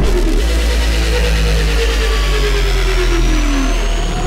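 Drum and bass mix in a drumless breakdown: a held deep sub-bass note under a synth tone gliding slowly downward in pitch, with a faint high sweep rising.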